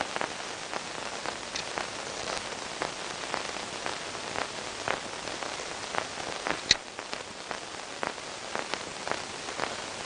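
Faint steady hiss with scattered, irregular crackles and clicks, and one sharper click about two-thirds of the way through.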